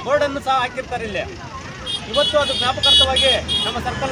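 A man speaking Kannada to the press, over a steady low hum of road traffic.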